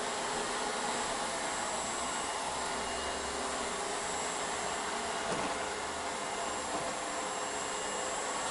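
Ecovacs Deebot N78 robot vacuum running steadily across a hardwood floor: the even whir of its suction fan and brushes, with a faint thin high whine.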